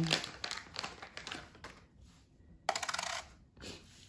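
A small metal washer dropped onto the metal platform of a digital kitchen scale: a few light clicks, then a quick rattle of about half a second a little under three seconds in as it settles.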